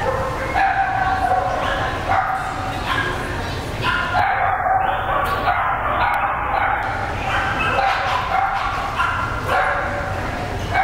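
A dog yipping and barking in short calls, many a second, again and again, with people talking in the background.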